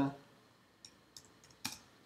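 A few separate keystrokes on a computer keyboard, unhurried and spaced out, the loudest about one and a half seconds in: a word being typed into a document.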